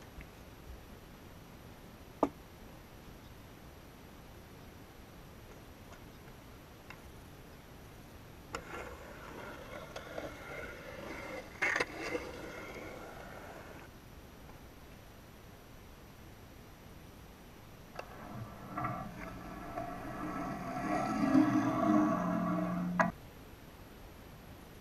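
Skateboard riding in a concrete bowl: a single sharp clack of the board, then two runs of wheels rolling on concrete with knocks of the board and trucks. The second run, near the end, is the loudest and cuts off suddenly.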